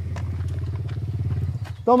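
Small quad (ATV) engine idling steadily, dropping away near the end.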